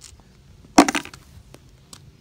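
A single sharp clack about three-quarters of a second in, as a small rock is dropped into a red pail, with a brief rattle after it.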